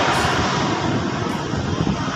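A Philippine Airlines twin-turboprop airliner's engines running on the runway: a loud, steady rushing noise.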